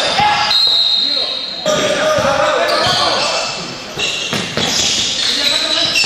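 A basketball being bounced on an indoor court during a game, with players' voices and calls. The sound echoes in a large sports hall.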